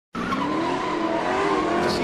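A car doing a burnout, its engine held at high revs while the tyres squeal. The sound starts abruptly just after the beginning and runs on steadily.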